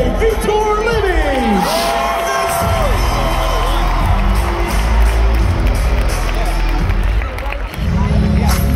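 Arena crowd cheering and whooping over loud music; a heavy, steady bass beat comes in about two and a half seconds in.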